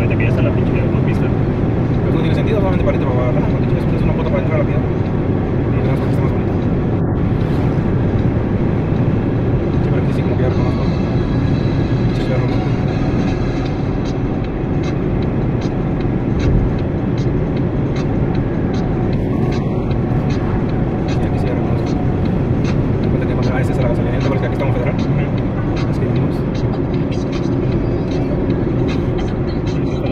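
Steady road noise inside a moving car at highway speed: a continuous low rumble of tyres and engine, with scattered faint clicks.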